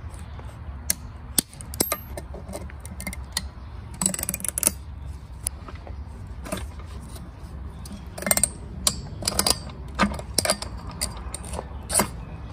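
Snap ring pliers and locking pliers working a steel snap ring on a transfer case output shaft: scattered metal clicks and short scrapes, busiest about four seconds in and again from about eight to ten seconds, over a steady low rumble.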